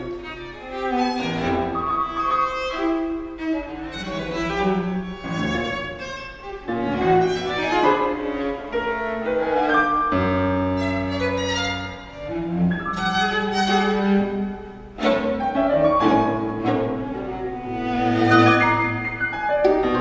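Piano quartet playing: violin, viola and cello bowing held notes over piano, with the music swelling and ebbing in phrases.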